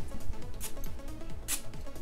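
Perfume atomizer on a Montblanc Explorer eau de parfum bottle sprayed onto a paper test strip: two short hissing puffs about a second apart. Soft background music plays underneath.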